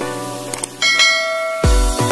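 Subscribe-button sound effects: a short click, then a bright bell ding just under a second in that rings for most of a second. These sit over background music, and a beat with heavy bass thumps comes in near the end.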